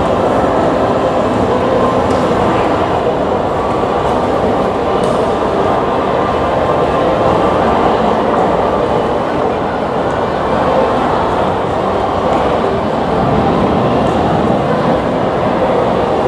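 Steady, loud din of a crowded city crossing in heavy rain: the hiss of rain mixed with many voices and traffic, with no single event standing out.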